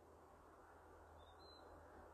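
Near silence: faint outdoor background hiss, with one faint, short bird chirp about a second and a half in.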